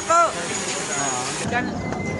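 A person's voice at the start over a steady background noise of people and traffic. The sound changes abruptly about one and a half seconds in, at an edit.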